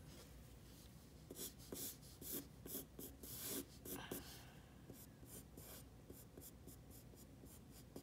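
Pencil sketching on paper: a run of short, quick strokes over the first half, then lighter, fainter strokes.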